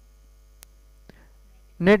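Steady low electrical mains hum under a pause in speech, with two faint ticks about half a second apart in the middle; a man's voice starts just before the end.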